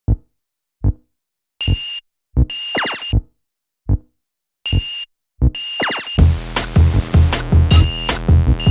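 Electronic intro music: sparse drum-machine kicks and short synth notes with gaps of silence between them, then a full, dense beat starts about six seconds in.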